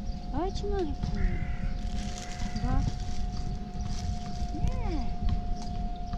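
A tabby-and-white cat meowing a few times, short meows that rise and fall in pitch, near the start, midway and near the end.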